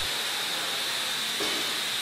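Steady hiss of liquid nitrogen being fed into stand mixers churning ice cream, with a thin, high, steady tone under the hiss.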